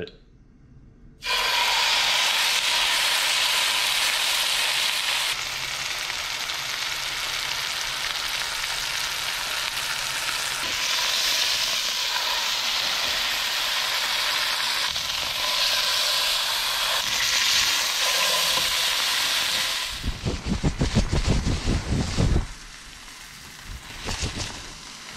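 Venison roast searing in hot oil in a skillet, sizzling steadily, the sizzle getting louder and softer a few times. Near the end it gives way to about two seconds of a louder, rough rumbling noise.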